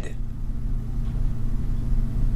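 A steady low hum and rumble, with no other sound on top of it.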